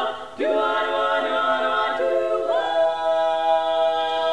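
Women's barbershop quartet singing in close four-part a cappella harmony. A short break comes a third of a second in, the chords shift twice, then settle into one long held chord from about two and a half seconds on.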